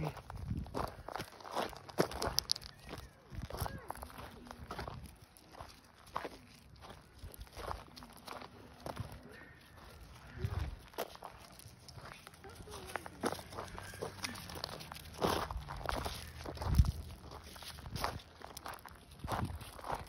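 Footsteps on loose gravel, an irregular run of steps as a person walks.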